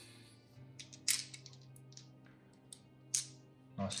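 Six-sided dice clicking as they are picked up off a tabletop and gathered in the hand: a few separate sharp clicks, the loudest about a second in and about three seconds in.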